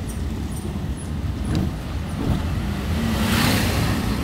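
A car driving slowly, heard from inside the cabin: a steady low engine and road rumble, with a rush of noise swelling about three seconds in.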